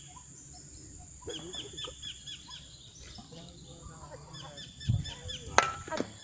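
Shovels working a pile of loose soil mix: a dull thump, then a sharp knock near the end, with a bird chirping in quick repeated notes about a second in.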